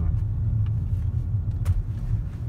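Low, steady rumble of a car driving slowly along a street, heard from inside the cabin, with a single light click near the end.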